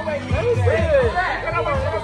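Several people chatting over music with a steady bass beat.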